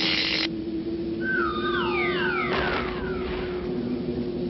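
Cartoon sound effects: a short crackling electric zap right at the start, then a series of overlapping descending whistles sliding down in pitch, over a steady low hum.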